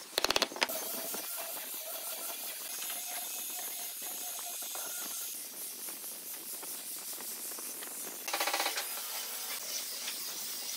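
A few sharp knocks of a chisel being driven into a curved wooden rail, then a steady hiss of a power sander's disc sanding a curved wooden fender, with a brief louder buzzing rasp about eight seconds in.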